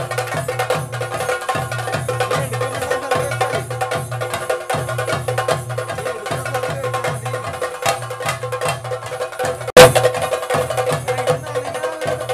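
Theyyam temple percussion: chenda drums beaten in a fast, dense rhythm over a steady ringing tone. One sharp, loud crack stands out about ten seconds in.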